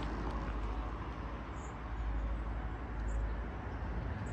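Steady outdoor background noise: a low rumble with a fainter hiss above it.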